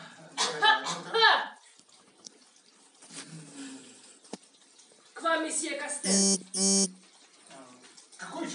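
A doorbell buzzer sounding two short buzzes about six seconds in, a steady low tone each time, announcing a visitor at the door.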